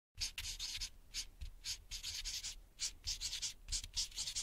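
Marker pen writing: about ten short, scratchy strokes in quick succession, some brief and some drawn out, with short gaps between them.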